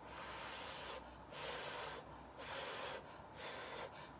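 A person slurping noodles from chopsticks: four breathy slurps, about one a second.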